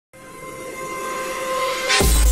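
A steady horn-like tone over a hiss, swelling in loudness for about two seconds: the sound sting of a TV commercial-break bumper.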